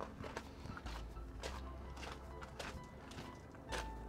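Footsteps crunching on gravel, irregular steps under faint background music.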